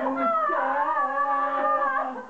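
A woman singing loudly in long held notes that waver up and down in pitch.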